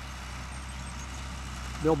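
John Deere tractor engine running steadily at a distance as it pulls a corn planter across the field: a low, even drone. A man's voice starts near the end.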